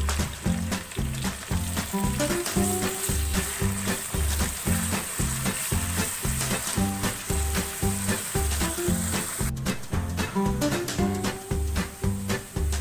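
Sliced onions sizzling and crackling in hot ghee in a wok, stirred now and then with a silicone spatula. Background music with a steady beat plays underneath.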